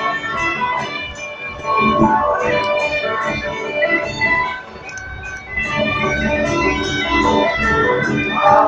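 Loud recorded music with guitar and a beat, played over a procession float truck's loudspeaker system.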